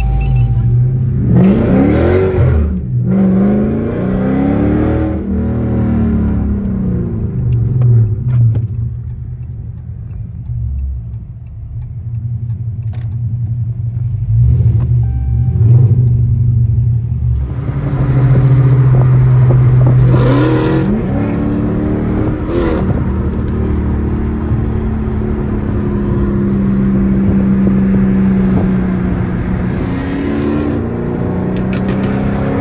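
Dodge Charger's Hemi V8 heard from inside the cabin, accelerating in several pulls with rising pitch, about two seconds in, around four to six seconds and again around twenty seconds, with steadier running in between.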